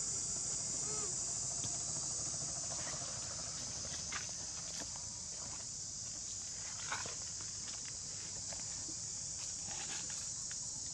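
Steady, high-pitched chorus of insects, unbroken throughout, with a few faint short clicks and rustles.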